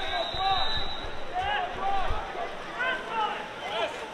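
Scattered shouts and calls from several voices around a water polo game, overlapping at different pitches, with a few low thumps in the first two seconds.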